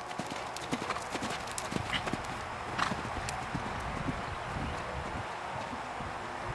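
A grey horse cantering on sand arena footing, its hoofbeats a repeated run of dull thuds.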